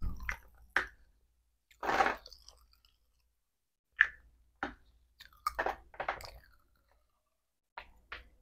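Small plastic spray bottles handled in plastic-gloved hands and set down into a clear plastic tub: a run of irregular sharp clicks and knocks with quiet gaps between them, several close together in the second half.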